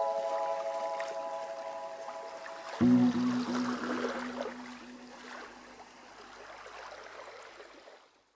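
Outro music: a held chord slowly fading, then a new, lower chord struck about three seconds in that rings out and fades away to nothing.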